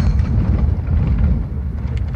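Low, steady rumble of a car driving slowly on a dirt road, heard from inside the cabin.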